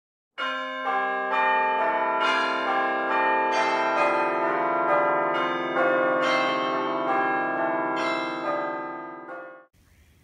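Church bells ringing in a running peal, several bells of different pitches struck about twice a second, each note ringing on under the next. The ringing fades near the end and cuts off suddenly.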